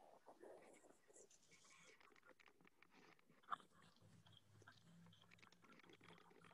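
Near silence: faint room tone with scattered soft clicks and one sharper click about three and a half seconds in, and a faint low hum in the second half.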